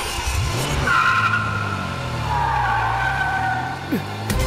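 Car engine revving with tyres squealing in a long skid. The squeal starts about a second in, holds for nearly three seconds and sags slightly in pitch near the end.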